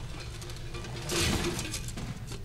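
Soundtrack music from the TV episode over a steady low hum, with a loud rush of noise about a second in that lasts under a second.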